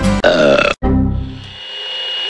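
A loud, wavering burp about a quarter second in, cut off abruptly, then a lower sound that fades, and a thin steady high tone near the end, part of a glitchy channel logo sting.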